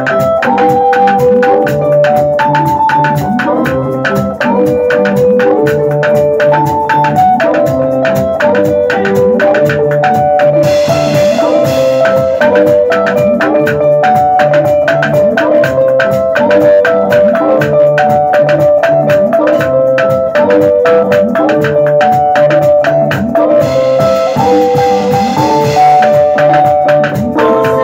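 Band playing an instrumental passage with no singing: a bright, repeating melodic riff over a drum kit and bass line at a steady beat, with two swells of cymbal wash, one a little before halfway and one near the end.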